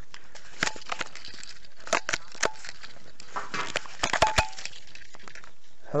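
Handling noise from a mobile phone and handheld camera: a scattered series of sharp clicks and knocks, some in quick clusters, over a faint steady hiss.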